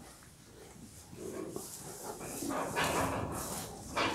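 Faint sounds from a stabled farm animal close by, starting about a second in and coming in two or three short spells.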